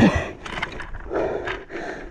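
The engine of a flipped tracked snow quad (ATV) cuts out with a quick falling whine at the start. This is followed by scattered short clunks and scuffling.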